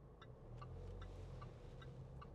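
Car indicator clicking steadily, about three clicks a second, over a faint low hum of engine and road inside the cabin.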